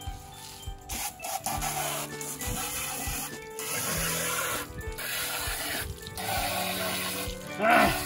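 Water from a garden-hose spray nozzle hissing and splashing onto a plastic pool-filter valve head as it is rinsed clean. The spray comes in four spells a second or two long, with short breaks between them.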